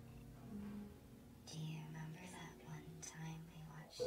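Faint whispering starts about a second and a half in, over a low held tone, after the music has died away.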